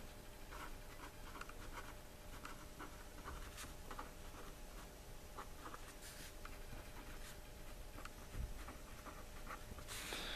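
Pen writing on paper: faint, short scratchy strokes as handwritten words are formed, with one soft low thump near the end.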